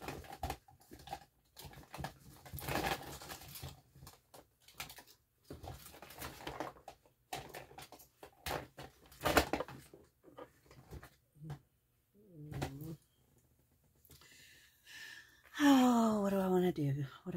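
Irregular rustles and light taps, as of objects being handled. About twelve seconds in there is a short falling voice-like sound, and a louder one comes at the very end.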